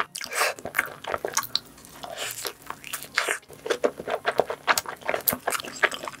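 Close-miked biting and chewing of pizza: a dense, irregular run of crackles and clicks from the mouth.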